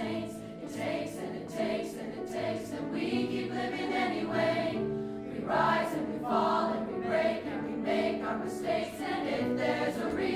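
A mixed choir singing in parts with piano accompaniment, the sound growing fuller and louder about halfway through.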